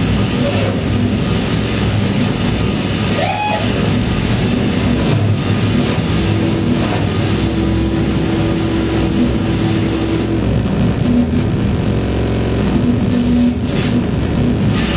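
Live electroacoustic noise improvisation on electronics and amplified tabletop objects: a dense, loud rumbling texture, with a sliding pitch sweep about three seconds in and a steady held tone from about six to ten seconds.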